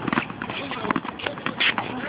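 Several tennis balls being bounced with tennis rackets at once, a quick irregular patter of overlapping taps of balls on strings and court. Children's voices are faintly heard between the taps.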